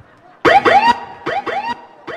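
High-pitched laughter in short rising yelps, two runs of about four notes each, starting about half a second in.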